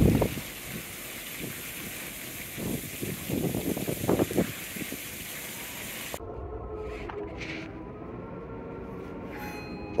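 Wind rushing over the open top deck of a cruise ship at sea, with a few stronger gusts, cut off suddenly about six seconds in as the door closes behind. It leaves a quieter muffled indoor background with faint steady tones, where the wind can still be heard blowing.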